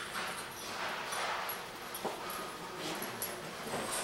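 A dog whining faintly over the hum of an indoor hall.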